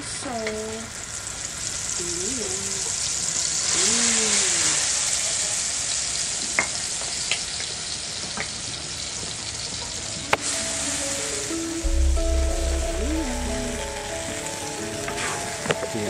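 Sambal chili paste frying in hot oil in a black iron wok: a steady sizzle that grows louder about four seconds in, with a few sharp clicks of the metal spatula against the wok.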